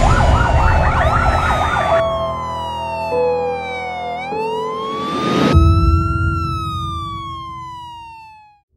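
Emergency vehicle's electronic siren on a fast yelp, about four warbles a second, switching just over a second in to a slow wail that sweeps down, up and down again, fading near the end.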